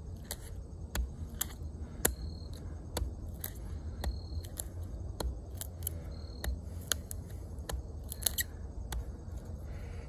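Tip of the OdenWolf W3's 440C steel fixed blade being driven and pried into a wooden stick. Irregular sharp clicks and cracks come from the wood fibres as the point digs in.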